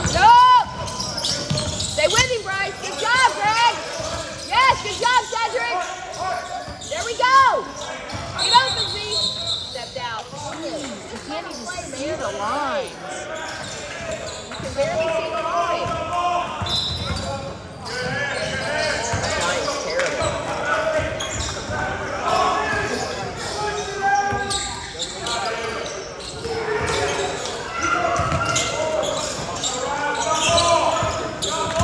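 Basketball game sounds in a large echoing gym: a basketball bouncing on the hardwood floor, sneakers squeaking in many short chirps, heaviest in the first several seconds, and indistinct voices of players and spectators.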